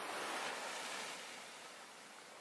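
Small waves washing up a sandy beach: a surge of surf that is loudest at the start and slowly fades as the water draws back.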